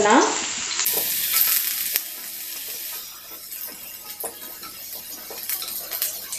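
Chopped garlic sizzling in hot oil in a nonstick frying pan, with many small crackles and pops. It is louder for the first couple of seconds, then settles to a quieter sizzle.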